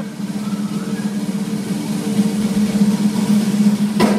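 A live band holding a low sustained note, a steady drone that slowly swells, heard from the audience over crowd noise in a concert hall.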